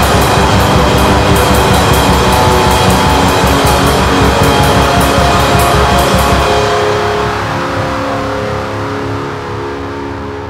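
Instrumental atmospheric black metal: dense distorted guitars over fast drums with regular cymbal hits. About six and a half seconds in, the drums stop and sustained guitar chords ring on, fading.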